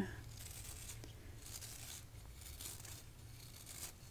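Boar bristle hairbrush stroked over the microphone in several soft, scratchy swishes, about one a second.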